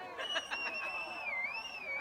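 Concert crowd noise with one long, wavering high-pitched whistle from someone in the audience, dipping in pitch about halfway through and then rising again.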